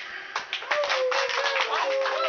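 A final acoustic guitar chord dies away, then a small audience breaks into clapping with voices calling out over it. One voice holds a long call that slowly sinks in pitch.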